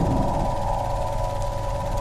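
Steady ambient drone from a horror short's soundtrack: two held tones over a low rumble, unchanging throughout.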